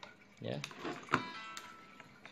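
A sharp click a little past a second in, followed by a brief ringing tone that fades within about half a second, after a short spoken 'ya'.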